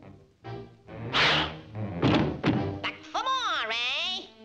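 Cartoon soundtrack: music with several heavy thuds, then a wavering, rising-and-falling pitched wail near the end, typical of a slapstick fight sequence.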